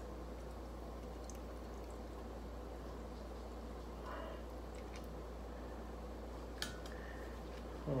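Quiet steady low hum with faint hiss: room tone while a lime is squeezed by hand over ice, making little sound of its own. A single faint click comes late on.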